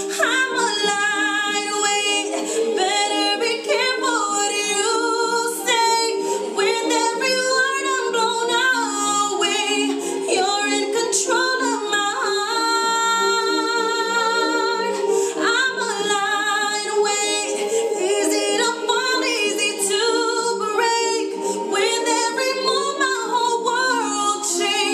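A woman singing a pop ballad solo, with long held and bending notes, over a steady sustained backing underneath.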